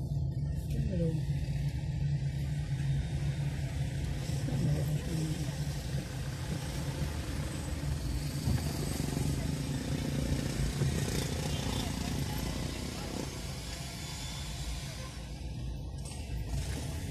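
Car driving at highway speed, heard from inside the cabin: steady road and wind noise with a low hum. A voice or singing is faintly heard over it.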